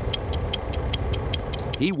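Clock ticking steadily, about four ticks a second, over a low music bed.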